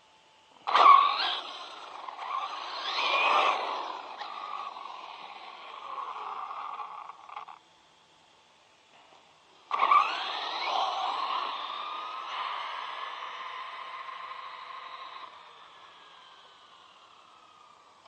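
ZD Racing Pirates 2 MT8 electric RC monster truck taking off twice on asphalt: a sudden burst of motor whine and tyre noise about a second in that cuts off at about seven and a half seconds, then a second launch near ten seconds whose whine falls in pitch and fades as the truck runs away.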